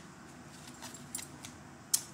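Tarot cards being handled, with faint light clicks and rustles and one sharp snap near the end.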